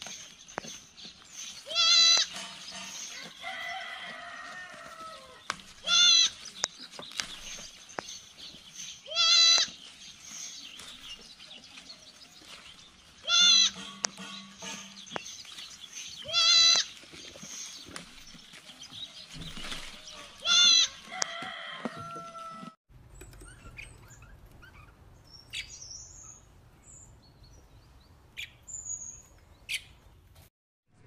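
Young sheep or goats bleating: six loud, high, quavering bleats, one every three to four seconds. The bleating stops about three-quarters of the way through, and a few faint high bird chirps follow.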